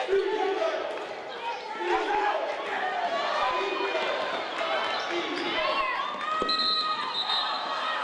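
Live basketball game sound on a hardwood court: a ball bouncing, with short squeaky glides and players' voices echoing in a large arena.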